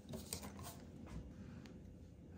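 Faint handling noise from hand-sewing a knit hat: soft rustling and a few light clicks as thread is pulled through the fabric close to the microphone.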